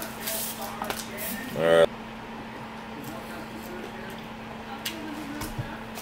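A short hummed "mm" from a person tasting food, about two seconds in, then a quiet room with a steady low hum and a few faint clicks.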